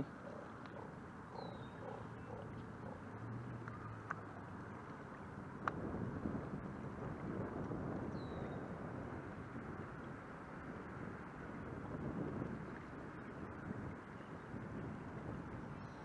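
Steady rushing noise of water and wind around a canoe moving across open lake water, swelling a little now and then. There is a single sharp knock about six seconds in and a faint high chirp twice.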